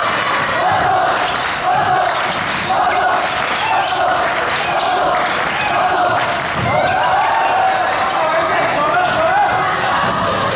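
A basketball dribbled on a hardwood gym floor, its bounces heard under the continuous voices of spectators.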